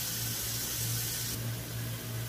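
Fish curry gravy simmering in a two-handled kadai on a gas stove: a steady soft hiss over a low steady hum. The hiss drops a little about one and a half seconds in.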